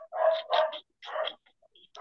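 A dog barking, about three short barks in the first second and a half, heard through a video-call microphone.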